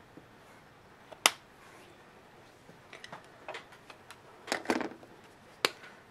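Small sharp clicks and taps from an art marker being worked against a ceramic palette and paper. There is one loud click about a second in, then a scatter of lighter ticks in the second half.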